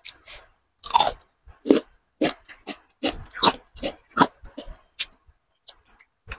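Close-miked eating: a bite into a raw cucumber stick followed by chewing, a string of sharp, irregular crunches and wet mouth sounds.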